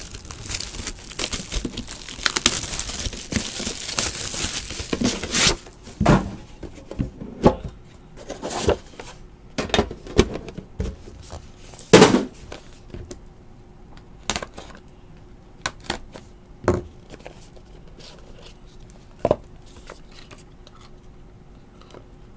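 A Panini Immaculate Football card box being unwrapped and opened. For about the first five seconds there is steady tearing and crinkling, then a dozen or so sharp knocks and taps of cardboard as the box and its inner case are handled, the loudest about halfway through.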